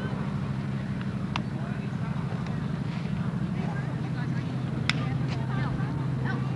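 Distant voices of players and spectators calling and chattering over a steady low hum, with two sharp knocks, the louder one about five seconds in.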